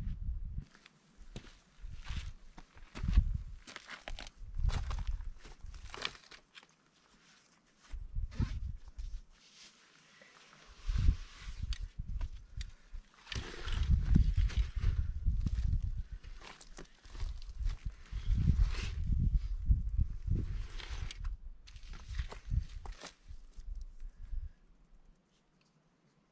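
Footsteps crunching and scuffing on a dry, gravelly dirt trail, uneven and irregular, with low thuds. Later come the rustle and bumps of a backpack being set down on rocks.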